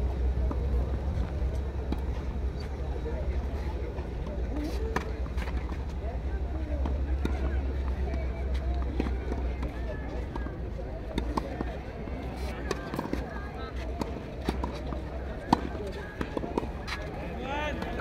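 Tennis balls struck by racquets and bouncing on a clay court in a doubles point: a few sharp pops scattered through, most of them in the second half. Under them is a steady low wind rumble on the microphone, heaviest in the first half, with faint voices of players in the distance.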